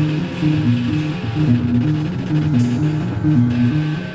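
Band playing live at a rehearsal: an amplified low riff of a few alternating notes, repeating over and over.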